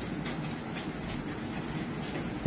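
Steady background noise with faint soft clicks and rustles, a few a second.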